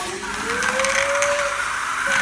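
Small electric motor and gears of a remote-control toy car whirring as it drives across a carpet, the whine rising in pitch over the first half second and then holding steady.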